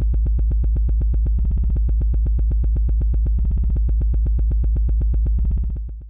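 Electronic synthesizer music sting: a deep, steady bass under rapidly pulsing synth notes, fading out near the end.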